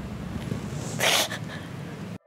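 A single short sniff from a tearful older woman about a second in, over a low steady background hum.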